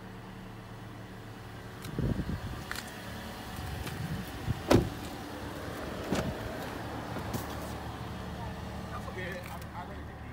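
2017 Toyota Corolla doors being worked: a few knocks and clunks. The loudest is a sharp door shut about halfway through, then the outside door handle is pulled and the latch clicks open a moment later, over a steady low hum.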